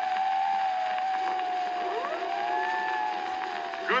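Storm-wind sound effect on an early acoustic cylinder recording: a held whistling tone with slower swoops rising and falling in pitch over it, under the record's surface hiss.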